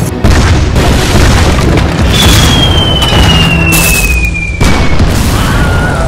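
Battle sound effects of repeated loud explosion booms and rumble. About two seconds in, a high whistle falls steadily in pitch for about three seconds, like an incoming shell, with another blast hitting just before it ends.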